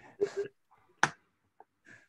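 A man's brief laugh, two short pulses, then a single sharp click about a second in.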